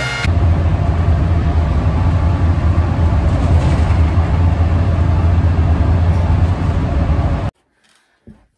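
Steady low engine drone and road noise heard from inside a moving bus. The sound cuts off abruptly about seven and a half seconds in.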